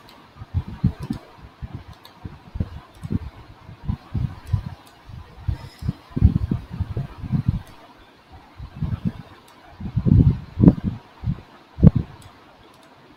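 Irregular low thumps and rumbling on the laptop microphone, with a few faint computer mouse clicks as a letter is copied and placed on screen.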